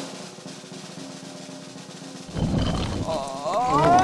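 A suspense drum roll on snare drum, growing louder a little past two seconds in, with a rising tone near the end.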